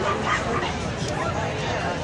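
A dog barking briefly in short yaps over crowd chatter, mostly in the first second.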